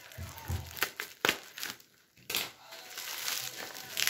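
Bubble wrap crinkling as it is cut with scissors and pulled apart by hand: a few sharp snaps and crackles, a short lull about two seconds in, then denser crackling near the end.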